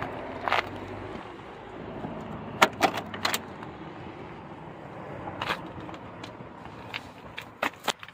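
1963 Plymouth Belvedere's door being opened: a cluster of sharp metallic clicks and knocks from the push-button handle and latch about two and a half to three and a half seconds in, with a few more clicks near the end.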